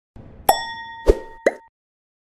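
Animated-intro sound effects: three sharp pops about half a second apart, with a clear ringing tone that sounds with the first pop and holds until just after the last.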